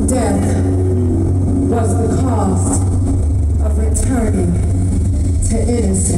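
Live concert sound through an amphitheatre PA: a steady low bass drone, with an amplified voice coming in several phrases that slide down in pitch, without clear words.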